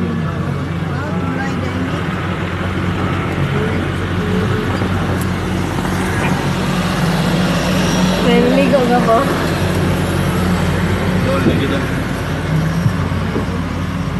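Engine and road noise heard from inside the cabin of a moving vehicle, a steady low drone.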